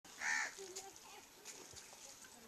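A crow gives one short, harsh caw near the start. Faint voices follow.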